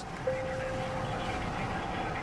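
Steady road and engine noise inside a moving vehicle's cabin. A faint steady tone sounds for about a second near the start.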